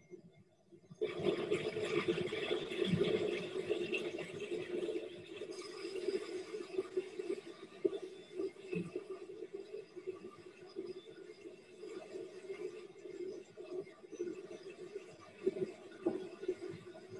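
Water and grist running into a distillery mash tun: a steady rush with a hum underneath. It starts suddenly about a second in and goes on unevenly, heard over a video call.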